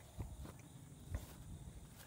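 A few faint, short knocks over a quiet outdoor background.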